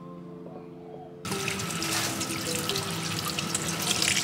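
Tap water running into a stainless steel sink and splashing over a clear plastic coffee dripper as it is rinsed; the water starts suddenly about a second in.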